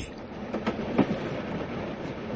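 Train running along the rails: a steady rumble with a few wheel clacks over the rail joints. It is a radio-drama sound effect of a train journey.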